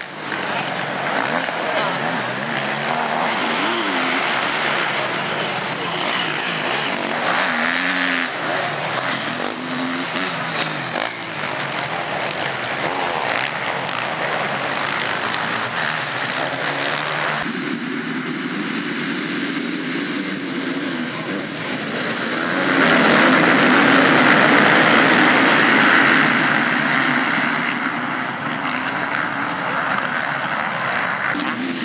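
Motocross dirt bike engines revving hard, their pitch rising and falling as riders race through the corners. The engine noise swells louder for a few seconds about two-thirds of the way through.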